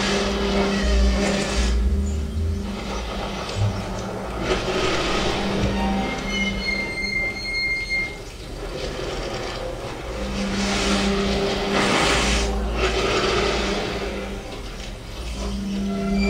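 Experimental electronic music played live from a laptop: held low drones and steady tones under washes of noise that swell and fade, with a thin high tone sounding for under two seconds about six seconds in.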